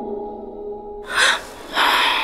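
Soft background music thins out. Two short breathy rushes of noise without any pitch follow, one about a second in and a longer one just before the end.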